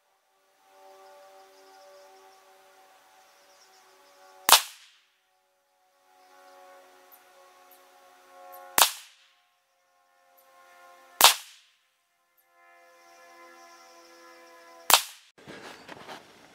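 Four single semi-automatic rifle shots from an AR-15 with a 16-inch SOTA Arms upper firing Monarch steel-cased .223 55-grain FMJ. They come slowly and unevenly, about three to four seconds apart, each a sharp crack with a short ringing tail.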